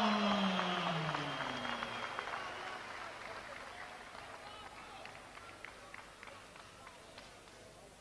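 Ring announcer's drawn-out call of a fighter's name over a PA, falling steadily in pitch and ending about two seconds in. Crowd noise with scattered claps then fades away.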